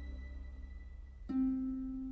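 Film-score music: a low sustained tone fades, then a single plucked string note sounds about a second and a quarter in and rings on.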